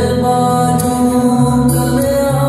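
Male singer performing live into a microphone, holding long sustained notes over amplified backing music, with a beat marked by sharp percussion hits.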